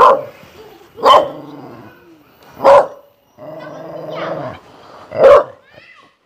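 A tan dog barking at the person in front of it: four loud, sharp barks with pauses of one to two and a half seconds between them.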